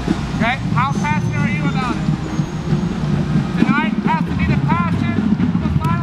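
Steady low city traffic rumble with a man's voice under it, and high, quickly repeated chirping calls in three bursts: just after the start, around four seconds in, and near the end.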